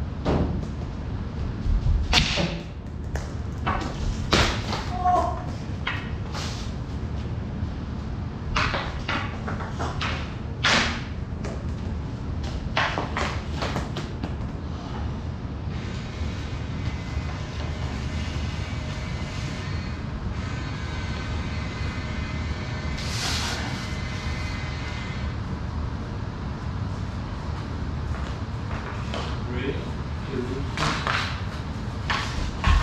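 Floor hockey on a bare concrete floor: hockey sticks striking the floor and the ball or puck in sharp knocks every second or two, echoing off the concrete. A steady hiss with a faint whine comes in for several seconds past the middle.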